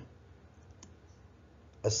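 Low room tone with a single faint click about a second in; a voice starts speaking near the end.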